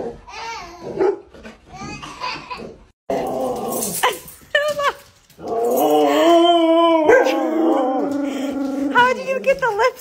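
Huskies vocalizing in the drawn-out, wavering 'talking' husky style: one long up-and-down call through the middle, then shorter yelping calls near the end.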